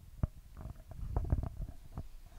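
Handling noise from a live handheld microphone as it is passed from hand to hand: low rumbling thumps and rubbing, with a few sharp knocks.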